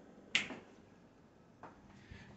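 A single sharp click about a third of a second in, then a fainter short sound near the end, in an otherwise quiet room.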